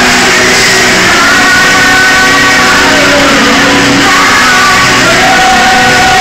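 Alternative rock band playing live, loud and steady, with a sung vocal holding long notes.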